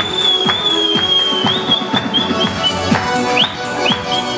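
Circassian (Adyghe) dance music with a steady drum beat, over which a shrill high whistle is held for about three seconds, followed by several short whistles near the end.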